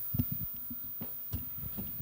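Handling noise from a handheld vocal microphone as it is passed from one hand to another: a few dull thumps, over a low steady hum from the band's amplifiers.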